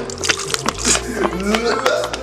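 A plastic squeeze bottle squelching as it squirts into a plastic blender jar, with a few sharp wet clicks, under voices and background music.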